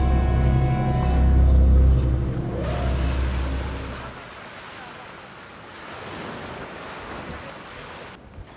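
Music with a deep bass drone and long held tones fades out about three to four seconds in. It gives way to the steady wash of small waves breaking on a sandy beach.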